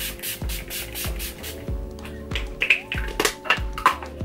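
Background music with held tones, over a quick series of pump spritzes from a bottle of Urban Decay All Nighter setting spray, about four a second, thinning out in the second half.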